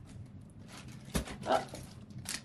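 Items being handled inside a cardboard box: faint rustling, a sharp knock a little over a second in, then a short exclaimed "oh".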